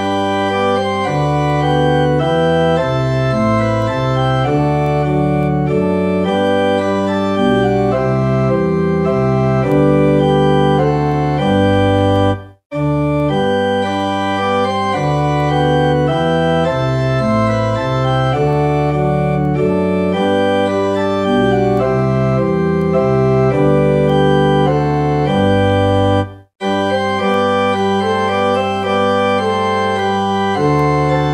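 Church organ playing slow, sustained chords that change in steady blocks. The music breaks off into silence twice, about 12 seconds in and again about 26 seconds in, between phrases.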